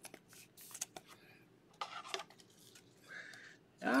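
Scattered light clicks and plastic rustles of a trading card being handled in a clear plastic holder.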